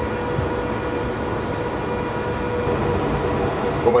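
Mercedes-Benz F 015 concept car moving off under its own electric drive after the Go button is pressed: a steady hum with a faint steady whine.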